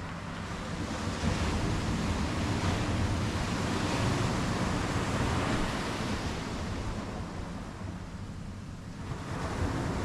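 Ocean surf breaking and washing up the beach, swelling louder through the first half and easing before building again near the end. Wind rumbles on the microphone underneath.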